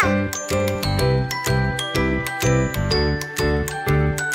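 Background music with a steady beat and a melody of short, high chiming notes.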